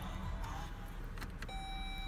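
Inside a 2018 Chrysler Pacifica's cabin: a low steady hum with a few light clicks from the controls being handled, then about one and a half seconds in a steady electronic tone starts and holds.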